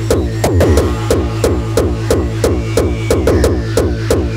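Hardcore electronic music: a distorted kick drum hitting about three times a second, each kick falling in pitch, over a steady low bass drone with a faint synth line above.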